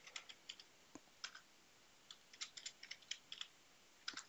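Faint keystrokes on a computer keyboard, typed in short irregular bursts that come thickest in the second half.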